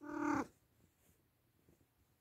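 An Oriental cat gives a single short meow, an even-pitched call of under half a second.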